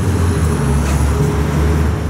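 Steady low rumble of road traffic, with the hum of a vehicle engine running.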